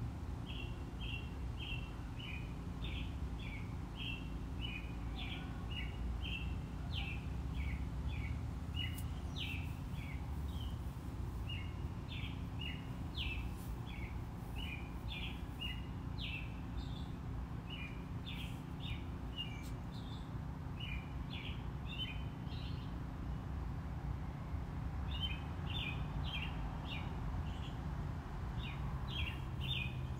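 A bird chirping over and over, several short chirps a second, with a brief pause about three-quarters of the way through. A steady low hum runs underneath.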